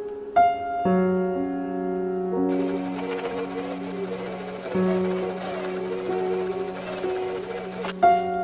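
Gentle piano background music throughout, with a sewing machine running under it from about a third of the way in, stitching denim, until it stops near the end.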